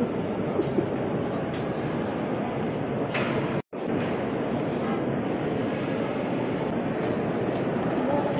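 Steady, even hubbub of a large reverberant underground hall: many distant visitors' voices blurred together by the echo. The sound drops out for an instant a little under four seconds in.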